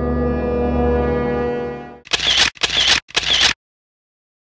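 A low, sustained musical drone fades out about two seconds in, followed by three quick camera-shutter sound effects about half a second apart.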